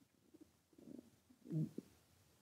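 Faint, low murmur of a man's voice: two brief soft sounds, one about a second in and one a little later.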